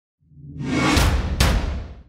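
Whoosh sound effect of a title-card sting, swelling in and fading out with a deep bass hit. Two sharp impacts land about a second in, close together.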